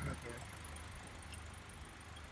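Hyundai Grand i10 engine idling steadily, a low, even hum.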